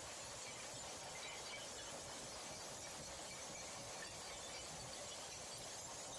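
Glass bottles being crushed in a 16 by 24 inch jaw crusher: a steady, fairly faint crunching and clinking of breaking glass with no let-up.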